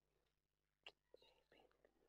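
Faint whispering between people lying in bed, with a sharp click just under a second in.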